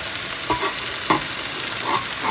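Chicken fillets frying on a ridged grill pan, a steady sizzle, with a couple of short knocks as a cloth-wrapped lid is set on the rice pot about half a second and a second in.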